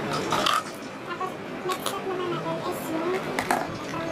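A faint, indistinct person's voice with a few brief clicks over background noise.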